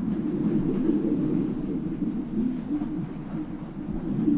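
A steady low rumbling drone, even in level, with no clear events in it.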